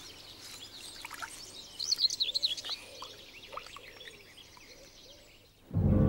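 Eurasian coots calling at their nest: a run of quick, high chirping calls, thickest about two seconds in, over faint outdoor background. Music swells in just before the end.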